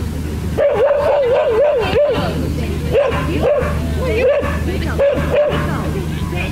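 A Vizsla whining in warbling, wavering cries: one long cry of about a second and a half, then several short ones.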